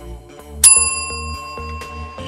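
A single bell ding from the workout's interval timer, struck about half a second in and ringing out for over a second, marking the end of the work interval and the start of rest. Background music with a steady beat plays beneath it.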